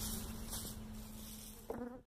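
Honey bees from a newly installed package buzzing around the hive in a steady low hum, with a brief louder buzz near the end.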